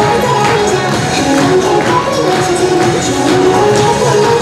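Chinese-language cover of a Japanese Vocaloid pop song playing, a synthesized female singing voice carrying the melody over a steady beat.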